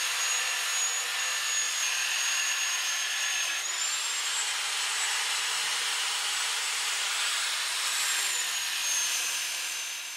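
Angle grinder with a sanding disc running steadily against the oak staves of a barrel, a high motor whine over the rasp of sanding. The whine rises slightly about four seconds in and drops again near the end.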